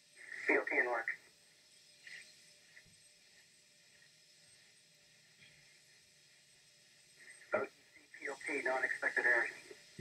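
Brief, thin, telephone-like voice exchanges on the launch control communications loop: one short burst near the start and a longer one in the last two and a half seconds. Between them there is only a quiet background with a faint steady tone.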